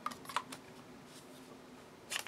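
Two small plastic clicks from handling a blue plastic marker-like tool and its clear cap, close together near the start, over a faint steady hum.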